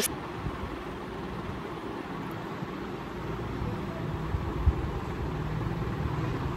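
Steady low background rumble, with one brief thump about four and a half seconds in.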